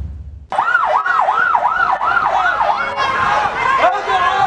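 Police van siren wailing in a fast up-and-down sweep, about two and a half cycles a second. From about three seconds in, a crowd's shouting voices join it.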